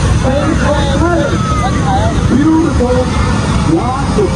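A crowd of spectators chatters, many voices overlapping, over a steady low rumble.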